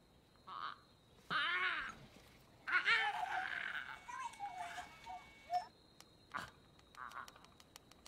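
Pitched calls in three bursts, each a string of quick rising-and-falling chirps, the first about a second in being the loudest. They are followed by a single sharp click and a few faint ticks.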